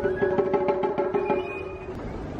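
Japanese bamboo flute sounding held notes, a higher tone joining about two-thirds of the way in, over a quick patter of light taps.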